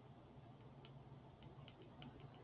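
Near silence with a low hum and a few faint, light ticks of a stylus on a tablet as handwriting is added to the slide.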